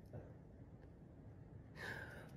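Very quiet, faint breathy laughter from a woman, ending in a short gasping intake of breath near the end.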